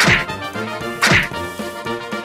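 Two cartoon-style whack sound effects about a second apart, each a hit that sweeps down in pitch, over background music.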